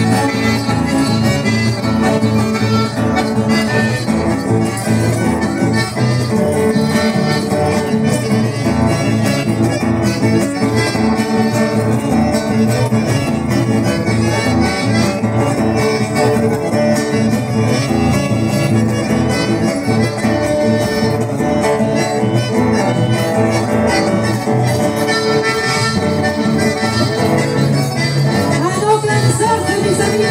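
Live accordion and two acoustic guitars playing an instrumental dance tune, without singing.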